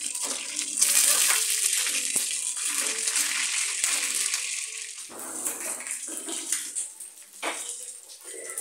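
Chicken pieces frying in hot oil in a pan, a steady sizzle that is loudest in the first half, with a couple of light clicks of a fork against the pan as the pieces are turned.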